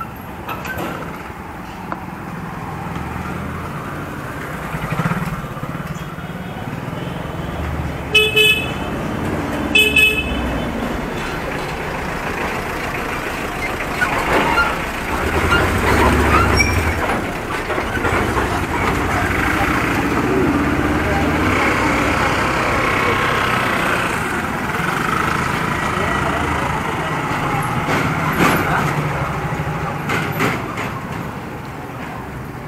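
Motor vehicles passing along a narrow street, louder about midway as one goes by close, with two short horn honks about eight and ten seconds in.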